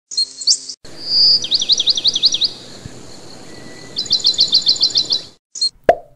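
Songbird singing: a held high whistle, a quick run of about six down-slurred notes, then a fast series of about ten evenly spaced short chirps. A brief sound opens it and a sharp click comes near the end.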